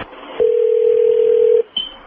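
A steady electronic tone, a single pitch held for about a second, followed by a short higher blip near the end.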